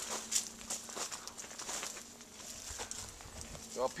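Faint, irregular footsteps and rustling on dry vineyard ground, with scattered light clicks.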